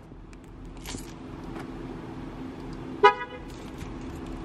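A car horn gives one short toot about three seconds in, over a low steady hum from the Kia Stinger.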